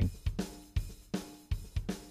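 EZdrummer 2's sampled Prog Rock drum kit playing a loop with kick, snare, hi-hat and cymbal, about two and a half hits a second. The tape drive, reverb, delay and phaser effects are turned down, so it sounds like a normal kit.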